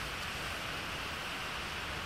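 Steady, even hiss of background noise with no distinct sound event.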